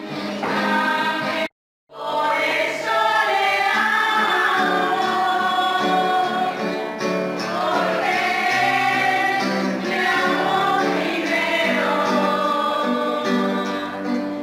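A choir singing a hymn-like song with musical accompaniment. The sound cuts out completely for a moment about a second and a half in, then resumes.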